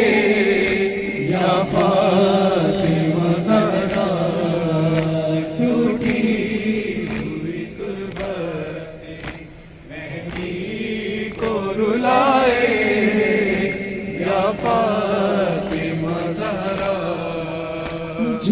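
A noha, a Shia lament, chanted in Urdu by a young male reciter into a microphone, with a group of men singing along and no instruments. Under the voices runs a steady beat of open hands striking chests (matam). The chanting drops to a short pause about halfway through, then resumes.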